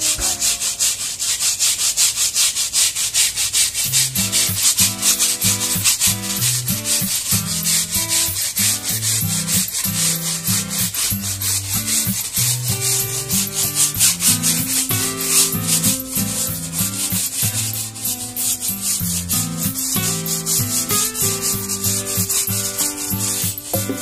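Plastic-bristled brush scrubbing the wet rubber sidewall of a car tyre in rapid back-and-forth strokes, working dirt out of the rubber. Background music comes in under the scrubbing about four seconds in.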